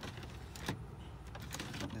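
Two light clicks of a hand on the plastic dashboard trim, one at the start and one just under a second in, over a low steady background hum.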